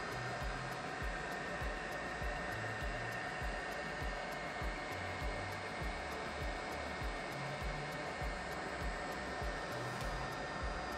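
Steady fan-like whooshing from a laser engraver, with a thin steady tone in it. Quiet background music with a regular bass beat runs underneath.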